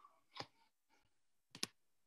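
Faint clicks at a computer: one sharp click about half a second in, then a quick double click about a second later, over quiet room tone.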